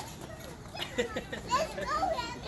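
Toddlers playing: short child vocalisations and light scattered footsteps on concrete, busier in the second second.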